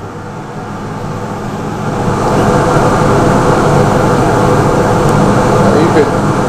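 Laars Mascot FT gas boiler's combustion fan and burner running. It grows louder over the first two seconds as the boiler modulates up to high fire, then holds a steady, loud rush.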